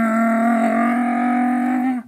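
A man's voice holding one long sung "wah" on a steady note, cutting off suddenly near the end.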